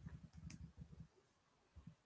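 Near silence: faint room tone, with a few soft low bumps and faint clicks in the first second.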